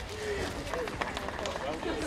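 Spectators' voices talking in the background, with a few short, sharp footfalls of a runner on wet tarmac near the middle.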